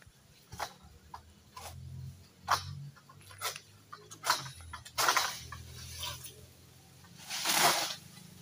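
Long-pole harvesting sickle (egrek) cutting oil palm fronds high in the crown: a string of sharp cracks and scrapes about every half second, then a louder, longer rustle near the end.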